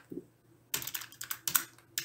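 Computer keyboard typing: a quick run of keystroke clicks starting a little under a second in, after a brief quiet start.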